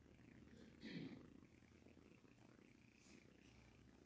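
Near silence: church room tone with a faint low steady hum, and one brief soft sound about a second in.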